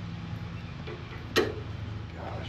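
A steady low mechanical hum with faint light ticks, broken about a second and a half in by one short spoken word.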